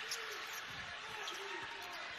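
Basketball being dribbled on a hardwood court, a few bounces heard over the steady murmur of an arena crowd.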